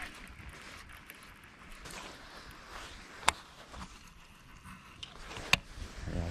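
Handling of a baitcasting fishing reel during a retrieve: a faint steady hiss with two sharp clicks about two seconds apart.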